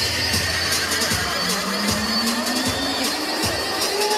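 Background music with a steady beat, with a tone rising slowly through the middle.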